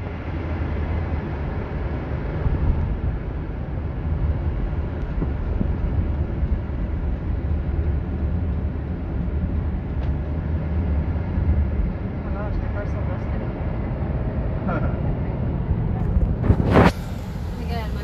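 Road and engine noise inside a minivan's cabin while it drives in traffic: a steady low rumble with tyre hiss, and a brief loud burst of noise near the end.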